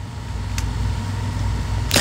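A low rumble that grows steadily louder, with a faint click about half a second in.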